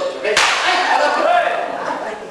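A sudden sharp crack about half a second in, its noise fading over the next second, with a person talking.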